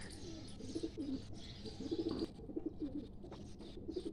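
Domestic pigeons cooing: a string of low, rolling coos, one after another.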